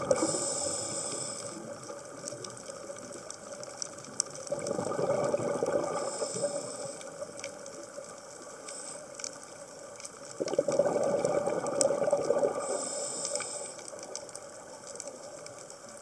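Scuba diver breathing underwater through a regulator: three swells of exhaled bubbles, at the start, about five seconds in and about eleven seconds in, with a quieter hiss and a few faint clicks between.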